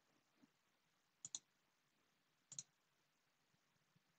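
Faint clicks of a computer mouse button in near silence: two pairs of quick sharp clicks, a little over a second apart.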